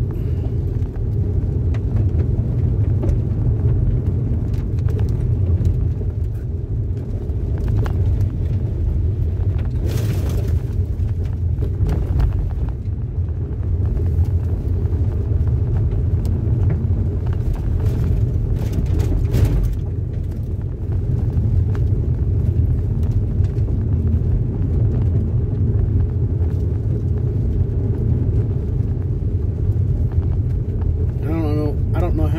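Steady low rumble of road noise inside a car cabin as it drives over a gravel road, the tyres and a stiff sports suspension carrying the roughness of the surface into the car. A few brief clatters stand out around ten seconds in and again just before twenty seconds.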